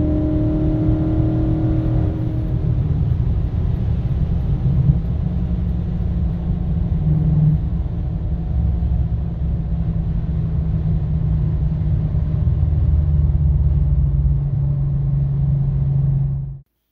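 Swapped 4.6-litre BMW V8 with headers and open piping, heard from inside the E39 wagon's cabin. For the first two seconds or so it pulls with a higher engine note, then drops to a steady low drone at highway cruise around 3,000 rpm, with road noise under it.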